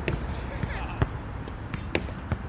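Basketball being dribbled on a hard outdoor court: three sharp bounces about a second apart, over a steady low background noise.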